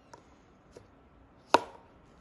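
An Apple Pencil pressed into the pencil holder of a clear plastic iPad case: one sharp click about one and a half seconds in as it snaps into place, after a couple of faint ticks.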